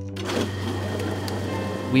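A papermaker's beater machine switched on just after the start, then running with a steady churning wash as its roll beats wet cotton fibres and water in the tub, with background music underneath.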